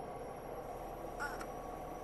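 Quiet room tone with a faint steady hum and high whine. About a second in, a baby gives one brief, faint high-pitched squeak.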